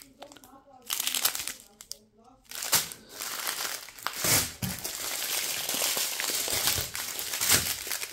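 Plastic bags of diamond-painting drills crinkling as they are handled and laid down, a dense, crackly rustle from about three seconds in. A faint voice is heard briefly in the first couple of seconds.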